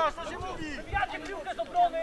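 Several people's voices talking and calling over one another without clear words, with one louder drawn-out call near the end.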